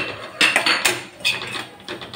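Metal spatula scraping and clanking against a metal kadai while stirring spice powder through vegetable pieces: about four strokes, each with a short metallic ring.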